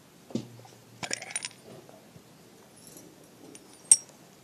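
Small steel parts of a diesel fuel injection pump, the plunger and its coil spring, clinking as they are handled: a soft knock shortly in, a quick run of light metallic clinks with a ringing jingle about a second in, and one sharp clink near the end, the loudest.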